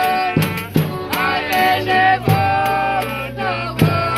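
Folia de Reis folk song: voices holding long, drawn-out notes in a sung verse, with strummed acoustic guitars and a cavaquinho, a shaken tambourine, and a few low drum beats.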